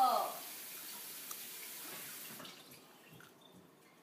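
Kitchen sink tap left running while dishes are washed one at a time, a steady hiss of water that stops a little over halfway through.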